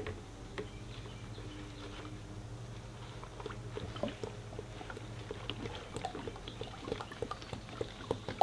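Cap being worked off an upside-down plastic jug of hydraulic fluid, with faint scattered clicks of plastic, as the oil starts to pour and trickle into a paper coffee filter in a funnel.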